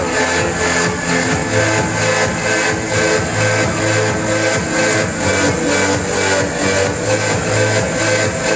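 Electronic dance music from a DJ set playing loud over a club sound system, with a steady beat of about two beats a second over a sustained bass line.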